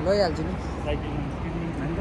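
A short vocal sound from a man at the start, then steady city street traffic noise.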